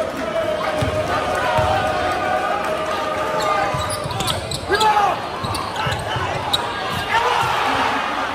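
Basketball bouncing on a hardwood gym floor with repeated thumps, under crowd voices in a large gym. About halfway through, sneakers squeak on the floor as players scramble for a rebound, and the crowd noise swells near the end.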